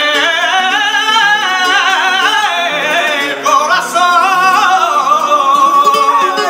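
Male flamenco singer (cantaor) singing a wordless, ornamented melismatic line with a wavering pitch, settling into one long held note a little after halfway, accompanied by a plucked flamenco guitar.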